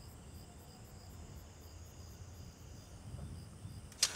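Faint crickets chirping, about five pulses a second, over a low steady hum.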